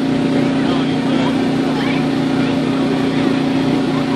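Electric air blower of an inflatable bounce-house ring running with a steady hum.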